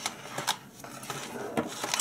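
Plastic blister packaging being handled as a coiled microphone cable is lifted out of it: light rustling and clicks, with a sharper click about a quarter of the way in and two more near the end.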